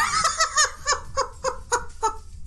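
A man laughing hard in a run of short, repeated bursts, about four a second.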